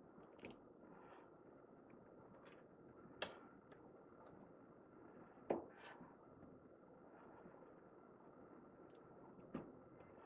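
A kitchen knife cutting through a pressed loaf of bread, ham and cheese, with three sharp knocks of the blade on a wooden cutting board, the loudest about halfway through. In between is near silence.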